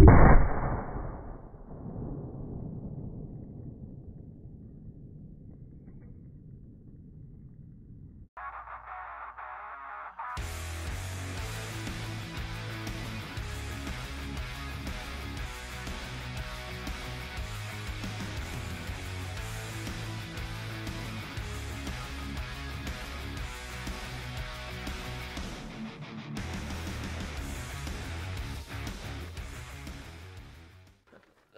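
A .50 BMG training round going off in an open fixture, outside any gun's chamber: one loud blast followed by a long, low rumbling decay lasting several seconds. From about ten seconds in, background music with a steady beat takes over.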